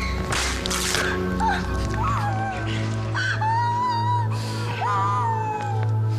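A whip lashing once near the start, then a woman's short, wavering cries of pain, over a low, sustained drone of dramatic score.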